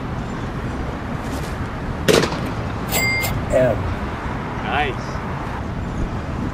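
A single sharp knock about two seconds in, followed a second later by a short high electronic beep, over steady outdoor city background noise with faint voice-like calls.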